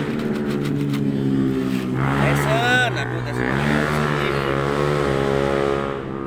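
A motor vehicle engine running steadily, its pitch dipping and recovering a little past halfway. A short rising-and-falling high call sounds over it about two to three seconds in.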